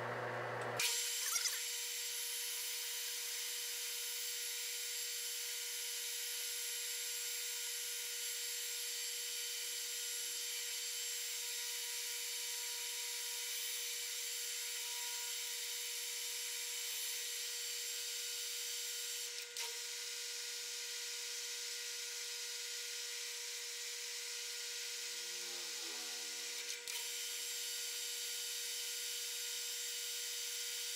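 Metal lathe running steadily with a constant whine and hiss as the front of a freshly cut external thread is relieved. The sound dips briefly twice in the last third.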